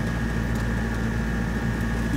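Small truck's engine running steadily while driving, heard from inside the cab as a low drone with a faint steady high whine above it.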